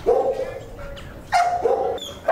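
Shelter dog barking in a kennel: two drawn-out, pitched barks, the first right at the start and the second a little past halfway.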